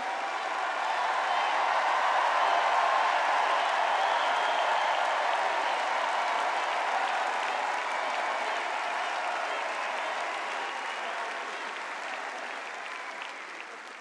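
A large crowd applauding, swelling over the first couple of seconds and then slowly dying away.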